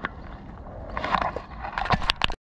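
A phone clicks into a bicycle handlebar mount, followed by rubbing and handling noise and the rush of wind and tyres as the bike rolls off, with a cluster of sharp clicks near the end.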